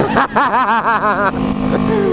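A man laughing in a wavering voice for about a second, over the steady running of a Kawasaki Ninja 250R's parallel-twin engine under way, which carries on alone after the laugh. The bike wears an Atalla aftermarket exhaust that the rider says has come out of place and is running straight through, far too loud.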